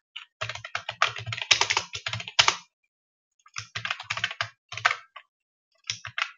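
Typing on a computer keyboard: a fast run of keystrokes for about two seconds, a pause of about a second, then a second, shorter run.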